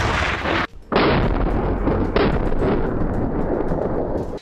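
Blasts from an AT4 shoulder-fired anti-tank launcher test: the end of the firing blast, then a sharp boom about a second in as the warhead hits the target, and another blast about two seconds in. Each trails off into a long rumble.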